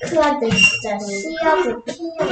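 Speech: a voice talking that the recogniser did not write down.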